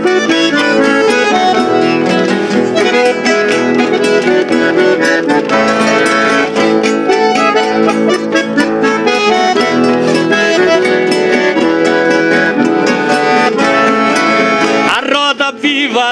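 Instrumental break in gaúcho folk music: a bandoneon plays the melody in sustained, reedy chords over two acoustic guitars strumming the accompaniment. Near the end the texture thins briefly before the next verse.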